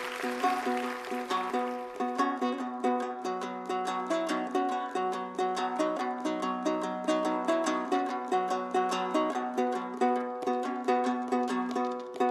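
Three-string Kazakh dombra strummed in quick, even strokes, a melody played over a steady drone note, with no singing.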